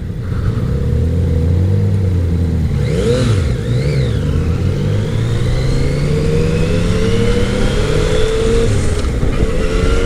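Yamaha FJ-09's inline-three engine pulling hard from the rider's seat, rising steadily in pitch through a gear, with an upshift about nine seconds in and the pitch climbing again after it.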